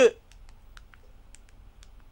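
A man's narrating voice breaks off at the start. What follows is a low, steady background hum with about seven faint, sharp clicks spread irregularly over the next second and a half.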